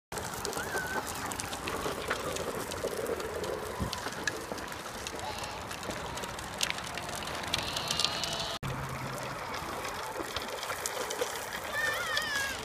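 Razor RipRider 360 drift trike rolling over rough asphalt, its plastic wheels and rear casters making a steady gritty rattle with small clicks. Children's voices call out briefly near the start and near the end.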